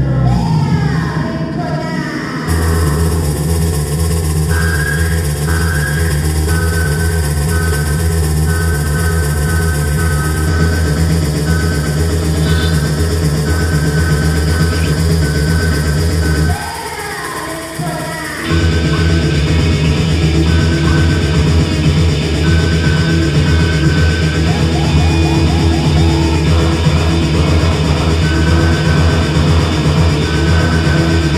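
Live electro-punk band playing loud, with electric guitar and keyboard over a steady bass-heavy beat and a repeating high riff. About 16 seconds in, the bass and beat drop out for two seconds under a swooping sweep, then the full band comes back in.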